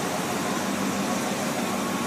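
Steady mechanical hum and hiss, with a faint low tone joining about half a second in.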